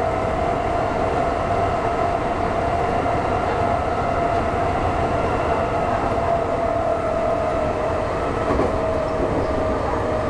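Nankai 6300-series electric train running through a tunnel, heard from inside the passenger car: a steady rumble of wheels and running gear with a high tone that drifts slightly lower over the seconds.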